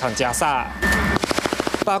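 A short, rapid burst of automatic rifle fire, many shots close together, in the second half, lasting under a second. A voice is heard just before it.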